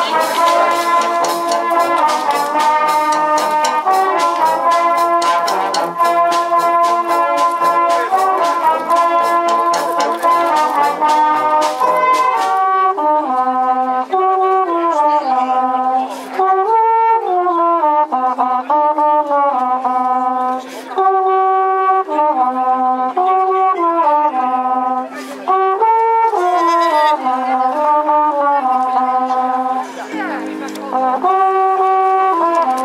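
A brass band plays a melody, with trombones and trumpets in steps and slurs. Dense sharp clicks or crackles sound alongside it for the first twelve seconds or so, then stop.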